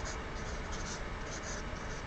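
Felt-tip highlighter writing on paper: faint, short scratchy strokes.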